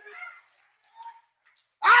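A pause in a man's amplified preaching, with a faint short voice-like sound at the start and another brief one about a second in. The preacher's voice comes back near the end.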